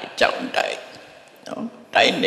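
An elderly man's voice speaking a short phrase into a microphone, then a pause and a brief utterance about a second and a half in.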